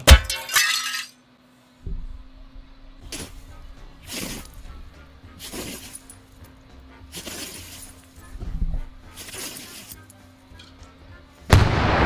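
A loose wooden deck board tips up under a man's step with a sharp crash and a clatter lasting about a second. After a brief silence, soft rustles come roughly once a second as a dog moves through dry leaves, over a faint steady hum. Near the end a loud, rumbling blast sets in.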